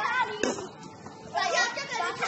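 Children shouting and calling out at play, with a short sharp noise about half a second in.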